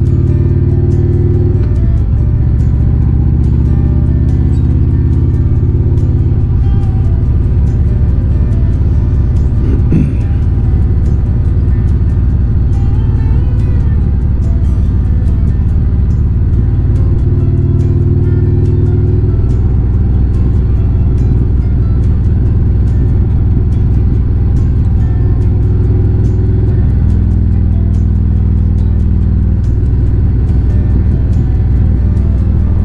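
Motorcycle engine running under way with heavy wind and road noise, its pitch shifting a couple of times as the rider works through the bends. Music plays underneath.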